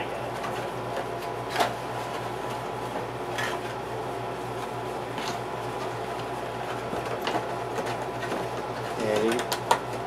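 Steady machine hum, with a few light plastic clicks roughly every two seconds as a PVC figurine is handled.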